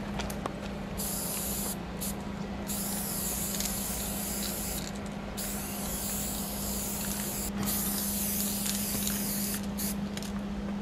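Aerosol spray paint cans hissing as they are sprayed onto a steel freight car. There is a short burst about a second in, then longer sprays of about two seconds each with brief breaks between.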